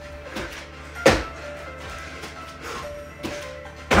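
Background music playing, with a sharp thump about a second in and a few softer knocks as bare feet and hands land on a hardwood floor during a bear-crawl kick-out and kick-back.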